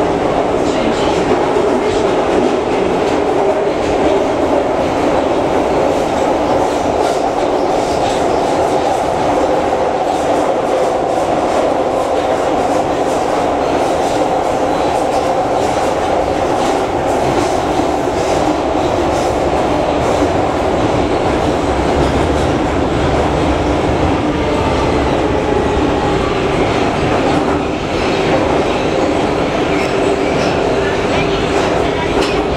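Metrowagonmash metro train on Budapest's M3 line running through the tunnel, heard from inside the passenger car: a loud, steady noise of the train in motion.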